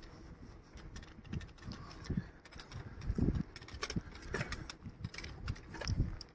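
Footsteps of someone walking along a paved footpath: dull low thumps roughly once a second, with light scuffs and clicks in between.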